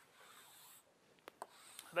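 Chalk writing on a blackboard: a faint scratching stroke, then two short taps of the chalk a little past a second in.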